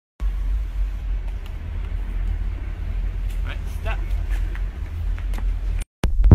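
A loud, uneven low rumble with faint voices of people talking in the background.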